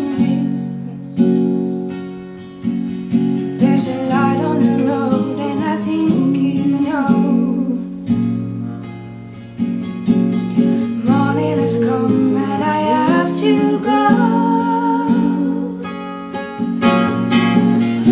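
Acoustic guitar strummed as accompaniment while a woman and a man sing together in a duet.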